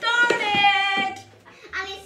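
A high-pitched voice holds one long note for about a second, falling slightly at the end, then gives a short syllable near the end. A couple of light knocks sound under the note.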